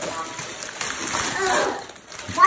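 Wrapping paper tearing and crinkling as a present is unwrapped, a continuous rustling with faint voices behind it.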